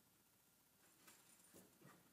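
Near silence, with a few faint rustles and soft knocks about a second in and near the end as hymnals are handled and slid into a backpack.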